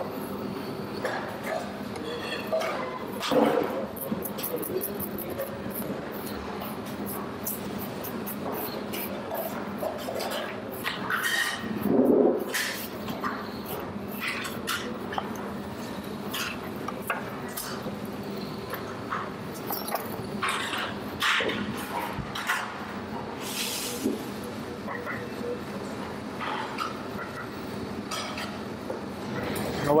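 Restaurant kitchen background: a steady low hum, with scattered small clicks and clinks of utensils and faint voices now and then, loudest about twelve seconds in.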